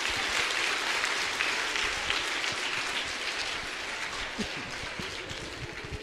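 A large audience applauding, strongest at the start and gradually dying away.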